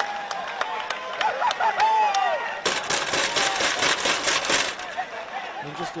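Ambient sound of a football match: shouting voices from the pitch and sideline, with about two seconds of crowd noise and clapping in the middle.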